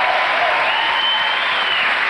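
Studio audience applauding steadily, with one drawn-out high call from the crowd rising and falling near the middle.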